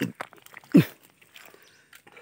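Wet mud squelching and slapping as hands dig and scoop in a waterlogged creek bed. There are short wet clicks and crackles, and one loud squelch with a downward-sliding pitch about three-quarters of a second in.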